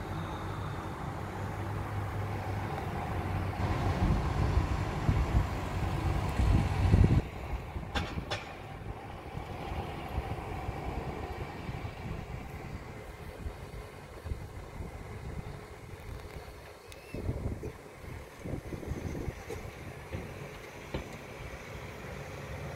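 A loud low rumble that cuts off suddenly about seven seconds in, followed by a fainter steady background noise with a few soft low thumps near the end.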